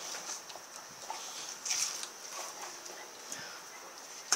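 Rottweiler mouthing and gnawing at a whole raw pork shoulder: wet licking and chewing sounds with scattered small clicks, a little louder about two seconds in.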